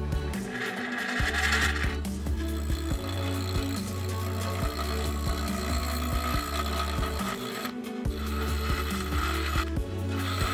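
Background music with a steady bass line, over a Ryobi bench grinder running with its wheel grinding dripped glaze off the foot of a ceramic mug.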